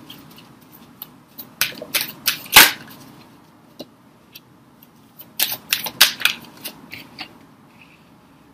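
A scattering of sharp clicks and taps in two clusters, the loudest about two and a half seconds in, over a low hiss.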